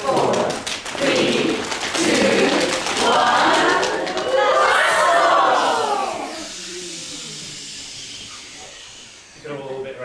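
A group of adult voices shouting the song's rocket countdown, then a long whoop that swoops up and back down in pitch as the rocket 'blasts off'. Over the last few seconds the group noise dies down.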